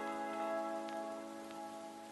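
Background music: soft held chords slowly fading away.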